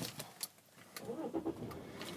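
The 2009 BMW X5 30d's straight-six diesel engine starting, faint as heard from inside the cabin: it catches about a second in and settles into a low idle near 1,000 rpm, starting without trouble.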